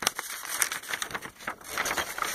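Folded paper instruction sheet rustling and crinkling in the hands as it is opened out, in a string of short irregular rustles.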